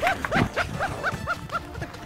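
A dog yapping in quick short yaps, about four a second, over background music.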